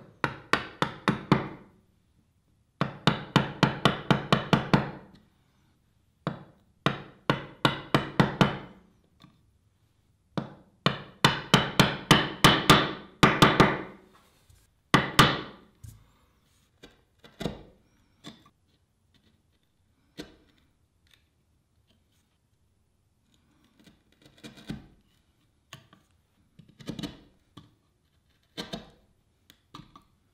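A chisel being tapped into the end of a wooden mortise to square it: groups of rapid, sharp taps, several a second, each group lasting a few seconds, with fewer and fainter taps in the second half.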